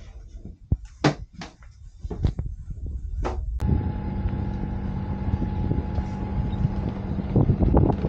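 A few light knocks and clicks as things are handled at a table in a yacht's cabin. Then, about three and a half seconds in, a sailing yacht's inboard diesel engine runs steadily as the boat motors out.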